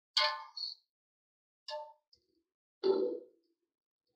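Metal spoon striking the side of an aluminium cooking pot while stirring chicken in masala: three short, ringing clangs spread over a few seconds.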